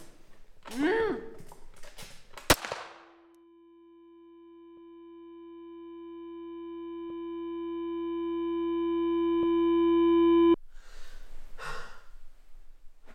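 Film sound design: a man's strained vocal cries, then a single sharp crack about two and a half seconds in. A steady high ringing tone follows, swelling louder for about seven seconds before cutting off suddenly. Soft breathing and rustling come near the end.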